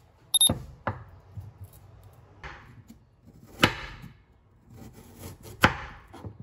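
A kitchen knife cutting through a carrot on a wooden cutting board: a few light knocks and a clatter as the knife and carrot go down on the board, then two sharp chops about two seconds apart.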